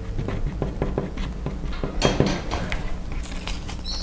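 Small handling sounds of paper craft petals being glued with a hot glue gun on a cutting mat: light clicks, taps and paper rustles, with a louder cluster of clicks about halfway through, over a low steady hum.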